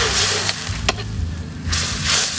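Chicken sizzling in a hot steel wok while a metal ladle stirs it, with a single sharp knock of the ladle against the pan just before a second in. The hiss dies down briefly after about a second, then swells again near the end.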